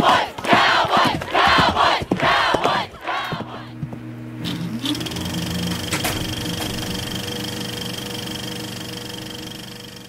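Intro sound track: a crowd shouting a rhythmic chant, about two shouts a second, for the first three seconds. Then a sustained low humming chord with a rising glide and a thin high steady tone, which fades away at the end.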